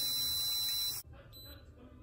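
A breath blown steadily into a handheld digital breathalyzer, a hiss with a high electronic tone held over it while the sample is taken. It cuts off suddenly about a second in, and a faint short high beep follows.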